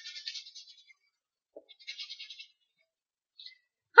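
Faint scratchy strokes of a stylus on a drawing tablet: one short pass at the start and another about two seconds in, with a small click between them.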